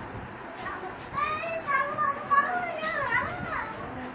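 High-pitched children's voices calling out, starting about a second in and dying away near the end, over a faint steady hiss.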